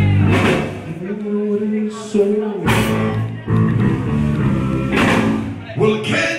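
Live band with electric guitars and drums playing a loud, guitar-led number. A low note is held for about a second and a half, and sharp drum or cymbal hits land three or four times.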